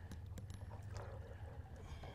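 Faint water lapping and trickling against a boat hull over a low, steady rumble, with a few small ticks.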